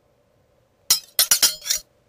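A quick run of about five sharp clinking impacts with a bright ring, starting about a second in and over in under a second.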